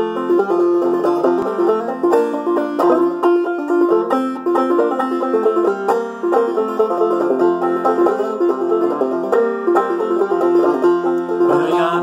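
Long-neck open-back banjo played clawhammer style in G tuning lowered two frets so it sounds in F: quick plucked notes with a steady drone note ringing under the melody.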